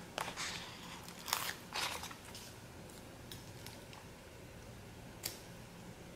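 A paper sticker being peeled off its backing sheet and pressed onto a planner page: a few short peeling and paper-handling sounds in the first two seconds, then a single light tap near the end.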